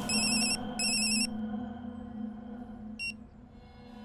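Mobile phone ringing: two short warbling rings in quick succession, then a single short beep about three seconds in.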